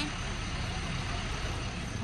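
Steady city street traffic noise, an even hum of passing and idling vehicles with no single event standing out.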